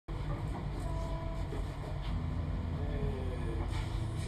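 Steady low rumble and hum from a small band's amplified setup between songs, with a few faint held instrument notes.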